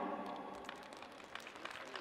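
Faint, scattered applause from an arena audience, with the echo of the public-address announcement dying away at the start.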